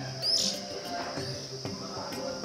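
Oriental magpie-robin calling: a sharp chirp about a quarter second in and a softer one just over a second in, over a thin high steady note, with background music underneath.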